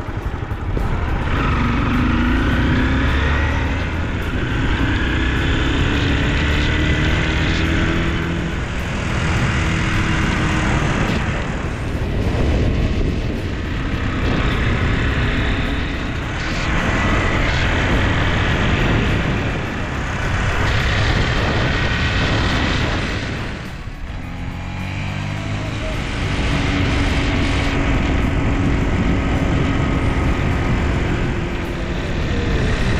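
Motorcycle engine running while riding, its pitch rising and falling as the throttle changes, with a dip about three-quarters of the way through before it picks up again. A steady rushing noise runs under it.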